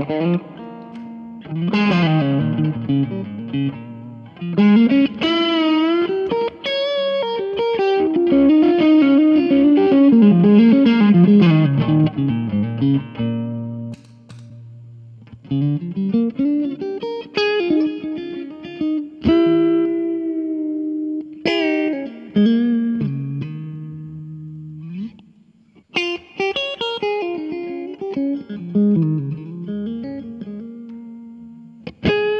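2012 Fender Classic Player '50s Stratocaster electric guitar played through a 1963 Fender Vibroverb amp: single-note melodic lines with bent, wavering notes and held chords, pausing briefly twice. In the second half the overdrive pedal is off, for a clean tone.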